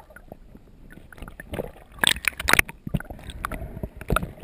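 Underwater water noise heard through a camera housing while diving, with a cluster of sharp clicks and knocks about halfway through.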